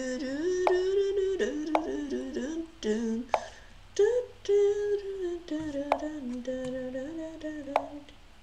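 A boy humming a wordless tune in held notes that wander up and down in pitch, with a sharp computer-mouse click every second or so as chess pieces are moved.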